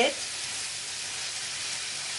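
Ground meat frying with onions, garlic and ginger in a nonstick pan, a steady sizzle as a spatula turns the meat to brown it.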